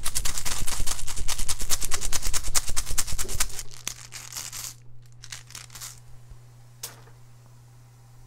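Rune stones clattering against one another as they are stirred: a rapid run of clicks that fades out about four seconds in, with one more click near the end.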